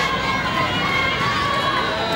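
Many overlapping voices of a crowd at once, steady throughout, with no drum beat or music standing out.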